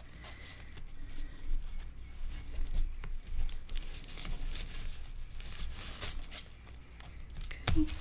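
Irregular rustling and crinkling of a satin seam-binding ribbon and cardstock as hands pull the ribbon ends through and tie them into a bow on stacked paper envelopes.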